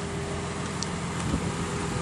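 Steady mechanical hum under outdoor background noise, with a faint steady tone and no distinct events.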